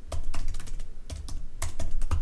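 Typing on a computer keyboard: about ten keystrokes in quick, uneven succession.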